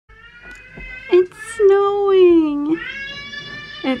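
A voice making a short loud call about a second in, then two long drawn-out calls, each about a second long and sliding down in pitch.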